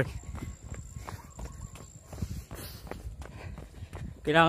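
Footsteps of a person jogging on pavement: faint, uneven thuds over a low rumble.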